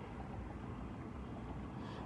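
Steady low rumble of background noise inside a car's cabin, with no distinct events.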